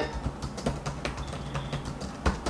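Computer keyboard typing: irregular, quick key clicks picked up on an open microphone in an online call, over a faint steady low hum.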